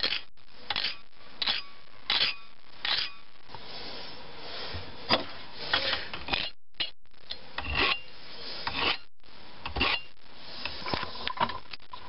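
Flat hand file rasping across a small piece of brass clamped in a bench vise, rounding off its edges. It goes in short strokes, with a longer stretch of continuous filing around the middle.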